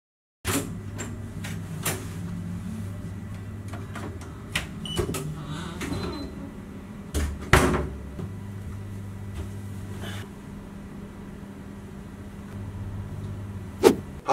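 Several knocks and clicks of a person handling things and shutting cupboards or doors in a small room, over a steady low hum; the loudest knock comes about seven and a half seconds in, another just before the end.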